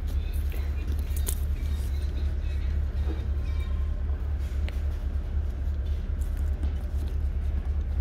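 Steady low rumble of background noise, with faint sounds above it and no clear events.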